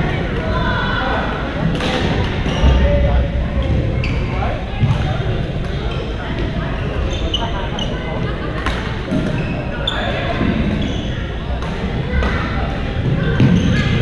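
Busy badminton hall: shuttlecocks struck by rackets in sharp clicks across several courts, short high sneaker squeaks on the court floor, and a steady hubbub of players' voices echoing in the large gym.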